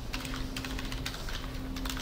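Computer keyboard typing: a quick run of keystrokes as a short console command is entered.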